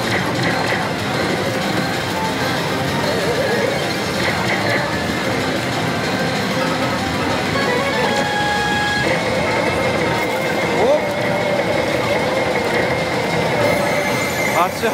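Steady din of a pachislot parlor: sound effects and music from rows of slot machines blending into one continuous roar, with a short electronic tone a little past the middle.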